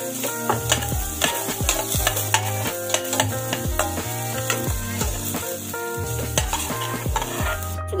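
A metal spoon stirring and scraping chopped garlic, onion and ginger frying in oil in a stainless steel pan, with steady sizzling and frequent clinks and scrapes of spoon on pan. It stops abruptly near the end.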